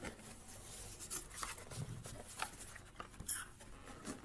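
Cardboard packaging scraping and rustling as an inner box is slid out of its outer box and its flaps opened: a run of short, scratchy rubs and small knocks.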